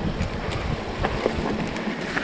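Mountain bike riding down a dirt and rock trail: wind rushing over the chest-mounted camera's microphone along with tyre rumble, broken by a few sharp knocks from the bike over rough ground.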